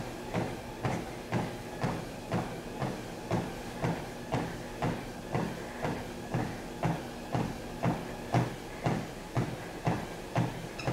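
Footfalls of a runner on a Sole F89 treadmill deck, about two even thuds a second, over the steady hum of the moving belt and motor.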